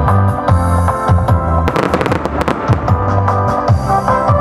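Daytime fireworks going off in quick bangs and crackles, thickest about two seconds in, over loud music with a pulsing bass beat.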